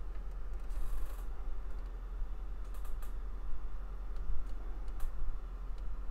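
Faint rustles and clicks from a cardboard LaserDisc jacket being handled, with a short rustle about a second in, over a steady low hum.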